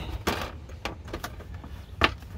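A few light plastic knocks and rubs as a Jeep Grand Cherokee WJ's plastic center console is shifted into place around the seat-belt buckles, over a low steady rumble.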